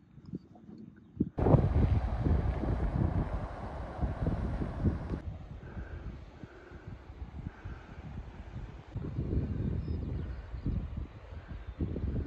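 Wind gusting on the microphone, rumbling unevenly. A louder, brighter rush starts suddenly about a second in and cuts off about five seconds in, leaving quieter gusts.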